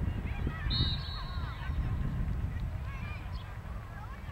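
A short, steady referee's whistle blast about a second in, over wind buffeting the microphone and scattered faint calls from across the field.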